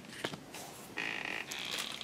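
Faint handling noise from a silicone mold being set down on a table: a few light taps, then two short soft rubbing sounds about a second in.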